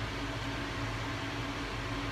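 Steady low mechanical hum with a few held low tones over a constant hiss.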